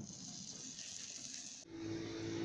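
A faint steady hiss that cuts off suddenly near the end, giving way to a steady low hum.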